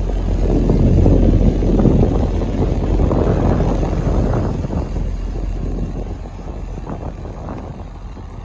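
Exhaust of a 2010 Corvette Grand Sport's 6.2-litre LS3 V8 idling, heard close to the quad tailpipes as a steady low, even note with no revs. It grows gradually fainter over the last few seconds.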